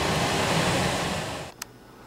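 Air handler's blower fan running with the access panel off, a steady rushing noise that cuts off suddenly about a second and a half in, followed by a faint click.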